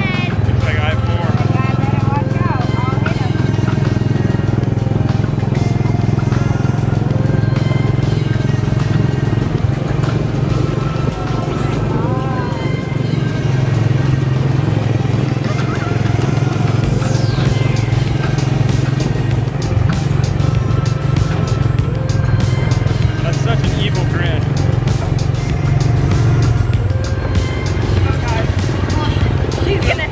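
Small gasoline engine of a ride-on race car running steadily under way: a loud, even low drone.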